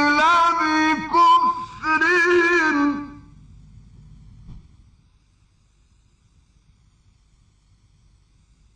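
A male reciter chanting the Quran in the melodic mujawwad style, drawing out a long ornamented note that waves up and down in pitch and breaks off about three seconds in. After that there is only a faint low background hum, near silence.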